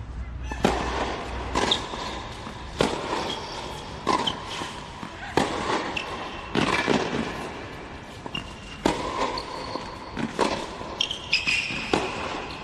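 Tennis rally on a hard court: tennis ball struck by rackets and bouncing, sharp hits coming about once a second, with a few short high squeaks between shots.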